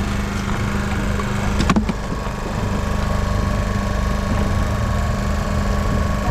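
A small fishing boat's engine running steadily with a low, even drone. There is one brief knock a little under two seconds in.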